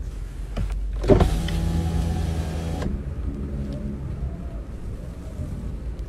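A car's electric window motor running for nearly two seconds: it starts with a click about a second in, whirs steadily, and cuts off suddenly. A low steady rumble runs underneath throughout.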